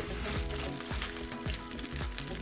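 Background music with a steady beat, under the crinkling of a clear plastic package being handled and opened.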